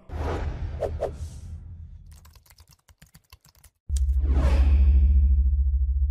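Logo-sting sound effects: a whoosh at the start, a quick run of sharp clicks like typing from about two seconds in, then a sudden loud whoosh with a deep boom, the loudest part, that fades away near the end.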